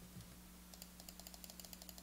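Faint rapid clicking of computer keys, several clicks a second, over a low steady electrical hum.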